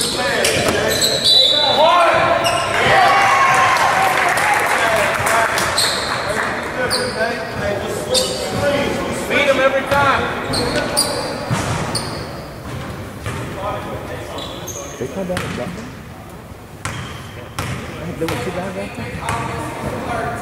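Basketball game sounds in a gymnasium hall: a ball bouncing on the hardwood floor, with players and spectators calling out. The voices are loudest in the first few seconds and quieter later on.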